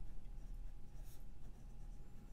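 Pilot Custom 823 fountain pen's medium gold nib writing on paper: faint scratching of pen strokes, with one sharper stroke about halfway through.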